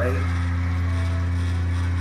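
Steady low hum on the recording, unchanging in pitch and level, with a fainter buzz above it.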